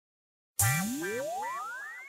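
Silent for about half a second, then the song's intro begins: an electronic sound effect gliding steadily upward in pitch over about a second and a half, over three short repeated notes and a hiss, fading toward the end.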